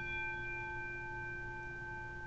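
A single struck bell, its note ringing on and slowly fading away.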